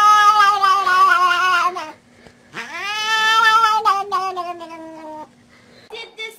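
A cat yowling in two long, drawn-out calls. The first dies away about two seconds in; the second starts a little after and lasts about two and a half seconds, swooping up at the start, then holding its pitch and sagging slightly at the end.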